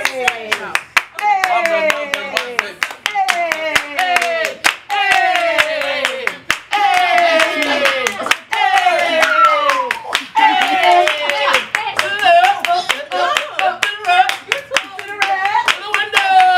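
A group clapping in a steady rhythm while voices call out a repeated falling cry, about once a second, in a celebratory party chant.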